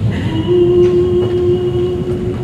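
Live opera orchestra: a low, dense rumble from the lower instruments, with one long steady note held over it from about half a second in.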